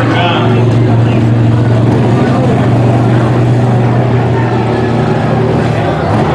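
Vehicle engine running at a steady low speed, a constant drone that changes near the end.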